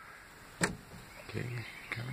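A single sharp click about half a second in, from a hand working a small Kidde fire extinguisher in its plastic wall bracket.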